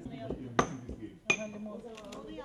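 Two sharp clinks of tableware striking each other, about 0.7 s apart, each ringing briefly with a high tone.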